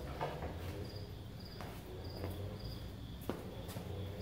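A cricket chirping in short, evenly spaced high chirps, a little more than one a second, over a low steady hum. Scattered footsteps and knocks come through as well, the sharpest about three seconds in.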